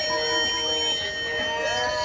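A live band's amplified instruments ringing out on held, steady tones just after the last strummed chords, as a song comes to its end.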